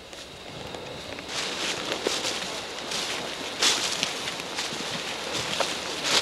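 Footsteps through dry leaves and grass: an irregular run of crunches and rustling, the loudest about three and a half seconds in.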